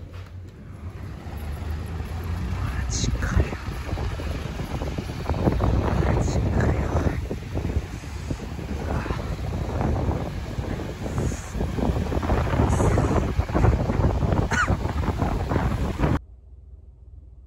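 Blizzard wind buffeting the microphone in uneven gusts, with cars driving through slush on the snowy road.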